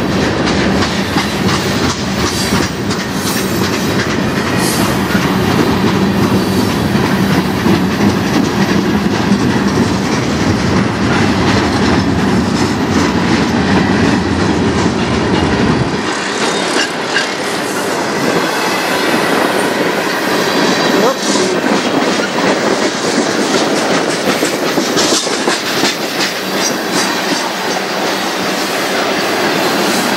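Freight cars of a manifest train, mostly tank cars and a boxcar, rolling past close by, with steel wheels clicking over the rail joints. The deep low rumble drops away suddenly about halfway through, leaving the higher rolling and rattling noise.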